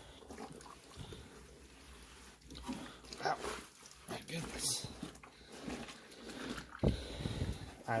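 Wet, sudsy clothes being lifted and shifted by hand in a top-loading washer tub, with irregular squelching and sloshing, as the load is redistributed to stop it spinning off balance. There is a single sharp knock about seven seconds in.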